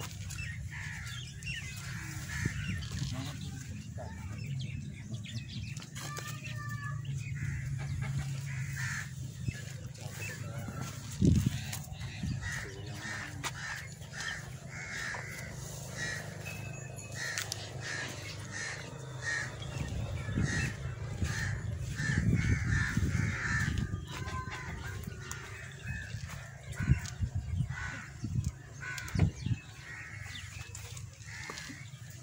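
Birds calling over and over in the background, over a steady low rumble, with a few brief loud knocks about a third of the way in and again near the end.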